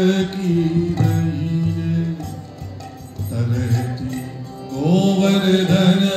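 Devotional kirtan: a lead singer chants long, held phrases over a harmonium. The voice sinks into a lull a few seconds in, then a new phrase rises near the end.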